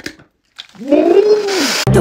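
A man's drawn-out, whiny wail that rises and then falls in pitch, with a breathy hiss. It is cut off abruptly near the end as music comes in.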